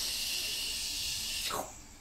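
A long hissing "shhh" made with the mouth, imitating a fire hose spraying water, which stops about one and a half seconds in.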